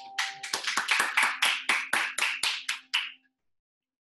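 Hand clapping by one or two people: about a dozen claps at roughly four a second, stopping about three seconds in.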